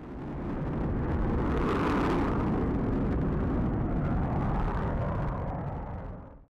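Jet noise of an Avro Vulcan bomber flying overhead, from its four Olympus turbojets: a loud, steady rushing noise that swells over the first second or so and fades away near the end.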